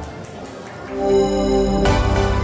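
Short electronic musical jingle: a held chord swells in about halfway through and is cut by a sharp hit near the end, the round-change cue as play moves to the next round.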